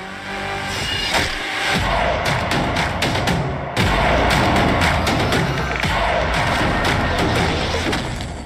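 Action-film soundtrack: dramatic music under a dense run of hits and crashes, growing louder and stepping up with a heavy hit about four seconds in.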